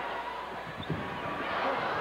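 Arena crowd noise and voices during live basketball play, with a few short knocks from the court about a second in.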